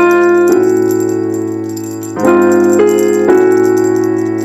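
Instrumental break of a live hip hop song: sustained keyboard chords that change every second or so, over a steady low bass note, with a light jingling percussion ticking on top.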